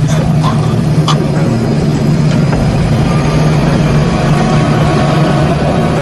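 A vehicle engine running with a steady low hum, with a few faint clicks in the first second.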